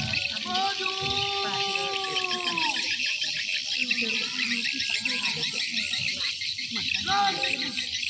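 A drill leader's drawn-out shouted marching command: one long held call of about two seconds that drops in pitch at its end, then a second short shout near the end. A steady high insect buzz runs under it.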